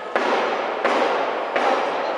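Three sudden loud bangs about 0.7 s apart, each followed by a noisy, echoing tail.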